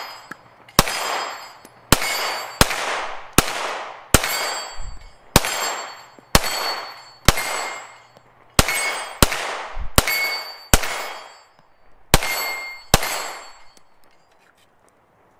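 Glock-pattern pistol fired about fifteen times at an uneven pace, roughly one shot every half second to a second and a half. Each sharp shot is followed by a long fading tail with a ringing tone in it. The shots stop about a second before the end.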